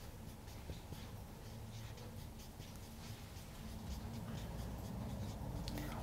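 Marker writing on a whiteboard: a run of faint, quick pen strokes as a word is lettered.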